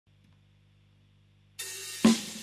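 A faint steady hum from a 1963 Fender Vibroverb tube amp. About one and a half seconds in, a soft first strum sounds on a 2006 Gibson Les Paul 1958 Reissue, played clean through that amp.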